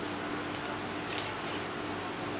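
Banana leaf rustling and crinkling as it is handled and folded by hand, in two short rustles about a second in, over a steady faint hum.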